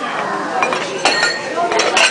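Ceramic plates and dishes clinking as they are handled: several sharp clinks with a short ring, over background chatter.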